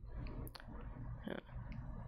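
A few soft clicks over a low steady hum during a lull in the talk, with a quiet "yeah" about a second in.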